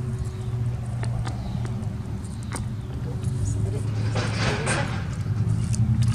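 A few small metal clinks from a light chain being worked around a log under a model logging arch's axle, over a steady low hum.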